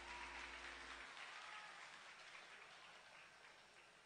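Audience applauding faintly, the clapping thinning out and fading. About a second in, the last low held chord of the music cuts off.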